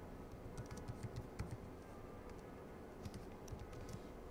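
Faint computer keyboard typing: a quick run of keystrokes from about half a second in to about a second and a half, then another short run near the end.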